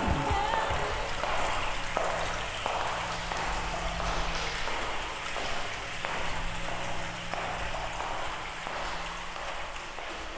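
Song outro: a steady crackling, rain-like noise over faint held low synth notes, fading out gradually.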